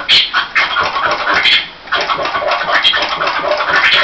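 Vinyl record scratching on a turntable: the record is pushed back and forth by hand while the mixer fader chops it into quick, short cuts. The sound drops out briefly just before two seconds in.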